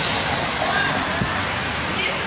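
Steady hiss of heavy wet snow falling on a wet, slushy street.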